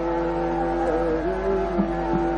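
Hindustani classical vocal music in Raga Hamir: a steady drone of held notes, over which the singer's voice glides slowly between pitches about a second in.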